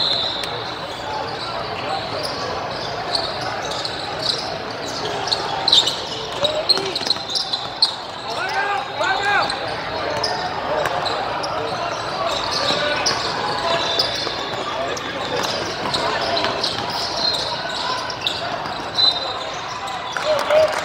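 A basketball being dribbled on a gym court, with sneakers squeaking in short bursts, over the steady chatter of players and spectators in a large hall.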